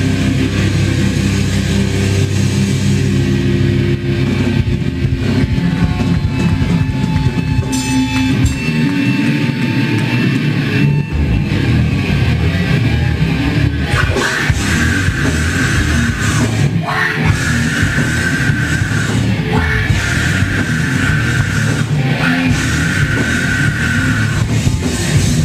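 Live heavy metal band playing loud: distorted electric guitars, bass and drums. The deepest bass drops away for a couple of seconds near the middle.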